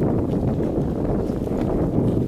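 Wind buffeting the microphone: a dense, uneven low rumble.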